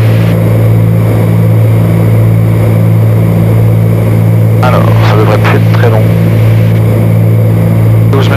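Cabin drone of a Cessna 310Q's two Continental IO-470 piston engines and propellers in flight: a loud, steady, low hum with a strong low tone.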